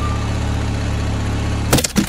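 Cartoon sound effect of a vehicle engine idling, a steady low rumble that stops about three-quarters of the way through, followed by a few sharp clicks near the end.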